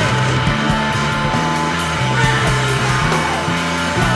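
Rock band recording playing: guitar, bass and drums, with the bass holding long low notes that change every second or so under steady cymbal strikes.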